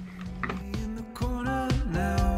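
Background music with a beat and a bass line, fading in and growing louder.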